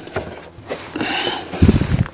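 Plastic engine cover on a Chevy Impala's 3500 V6 being fitted and pressed down by hand: a scraping, rustling stretch, then a few short low thumps near the end as it snaps onto its mounts.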